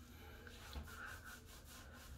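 Fingers rubbing thin co-wash through a wet, thick beard: faint, repeated scrubbing strokes of hands working product down to the skin.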